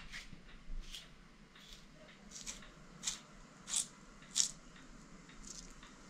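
Raw potato being cut into a spiral with a hand-held plastic spiral cutter: quiet, short crunching squelches, about one every 0.7 s as the potato is twisted through the blade.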